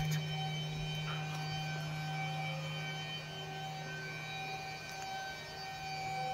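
Steady low electrical-sounding hum with several fainter, unchanging high-pitched tones above it.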